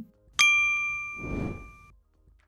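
A bright notification-style bell ding from a subscribe-button animation, struck once and ringing out for about a second and a half. A soft whoosh swells and fades about a second in.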